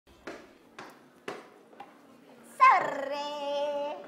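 Three soft knocks about half a second apart, then about two and a half seconds in a person's loud, long drawn-out shout on one held note.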